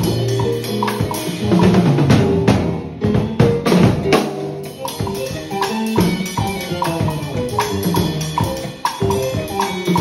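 Drum kit playing a Latin rumba groove with snare, rimshots, toms, cymbals and bass drum, while a pedal-struck jam block played with the left foot clicks along. Pitched notes of a recorded backing track sound underneath.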